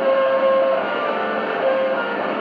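Electric guitar played live through an amplifier and effects pedals, in a doom-metal, post-hardcore style: long, ringing held notes that shift pitch a few times.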